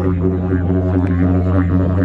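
Didgeridoo played live: a continuous, unbroken low drone with a rhythmic shifting in its upper overtones.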